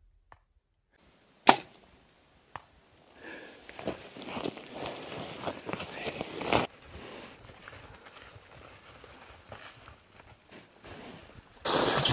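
A single sharp crack about a second and a half in, then a few seconds of rustling and crunching in dry brush and grass that fades to faint rustling.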